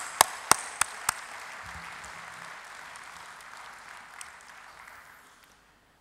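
Audience applause: one person's loud, close hand claps, about three a second, stop about a second in, and the rest of the clapping dies away gradually over the next few seconds.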